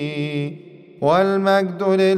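A man's voice chanting a Coptic liturgical melody without accompaniment, drawn-out wavering notes. One held note fades out about half a second in, and a new phrase begins about a second in.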